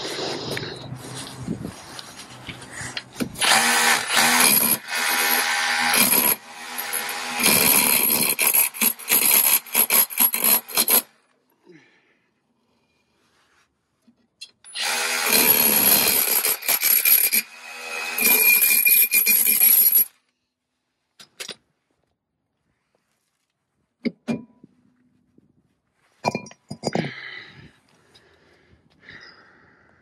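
Cordless rotary hammer in hammer-only mode, its chisel bit hammering rapidly against a seized rear brake drum to drive it off the hub. There are two long runs of hammering, about eleven seconds and then about five seconds after a short pause, followed by a few light knocks.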